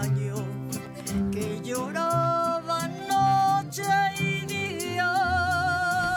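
A woman singing a Mexican ranchera-style song live, backed by guitar and accordion. Her voice comes in about two seconds in, moves through several notes, and ends on a long held note with vibrato.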